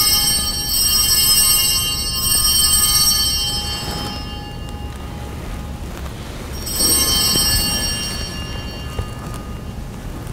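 Altar bells rung at the consecration, marking the elevation of the host: a bright shimmering ring that fades over about four seconds, then a second ring about seven seconds in as the celebrant genuflects.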